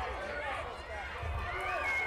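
Several voices calling out in a large echoing sports hall, over low thumps of feet bouncing on foam mats. A held high tone begins near the end.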